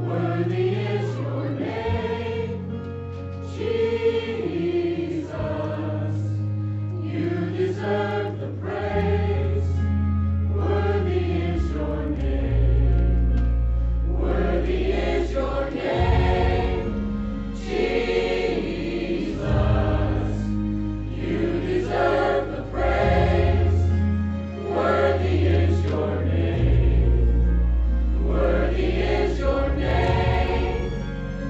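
Mixed choir of men and women singing a worship song, in phrases of a few seconds each, over low held accompaniment notes that change every few seconds.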